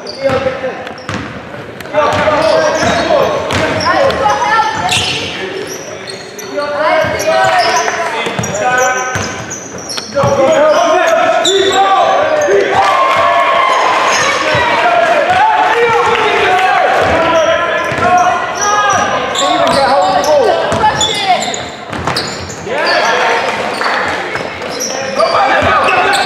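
Basketball game in a large sports hall: a ball bounces repeatedly on the wooden court as players dribble, among continual shouted calls from players and spectators.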